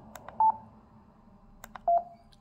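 Yaesu FTM-200D transceiver's key beeps as its front-panel V/M button is pressed: a short higher beep about half a second in and a lower one near the end, with faint clicks of the button.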